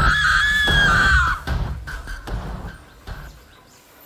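A high, drawn-out scream that wavers and then drops in pitch as it breaks off, over a horror soundtrack with low pulsing beats. The music fades out about three seconds in.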